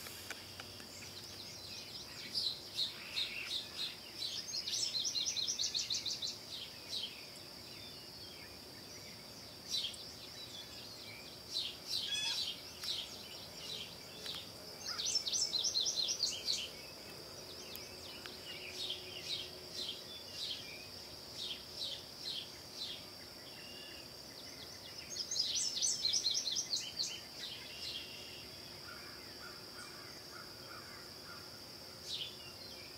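A songbird in the woods sings a rapid, high trilled phrase three times, about ten seconds apart, with scattered chirps between. Under it runs a steady high-pitched insect drone.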